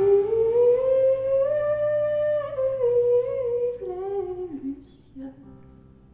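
A live band's final chord breaks off, leaving a single wordless hummed vocal note that glides slowly upward, holds, then wavers and slides back down, fading out about five seconds in over a faint low sustained note.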